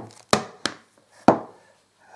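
Handling noise from unpacking a power adapter: the plastic plug and cable of its mains lead knock against the cardboard box and unit, giving three short, sharp knocks.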